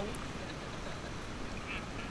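Steady low rumble and hiss of seawater sloshing around a camera held at the water's surface.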